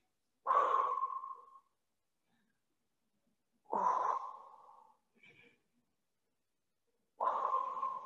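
A woman breathing out hard three times, about three and a half seconds apart, each breath starting suddenly and trailing off over about a second, in time with a repeated stretching exercise.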